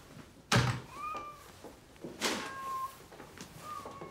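A front door shuts with a loud thud about half a second in, and a softer knock and rustle follows a little after two seconds. A cat gives three short, thin mews, at about one second, near the middle and near the end.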